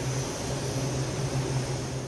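Steady hiss of air with a low, even hum underneath, from equipment in an aircraft paint hangar.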